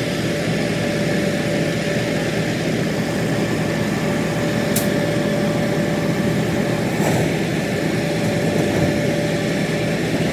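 Diesel engine of a John Deere wheel loader running steadily, with a constant tone over its noise, while it tips a bucket of soil into a trailer. Two short sharp clicks come about halfway through and again a couple of seconds later.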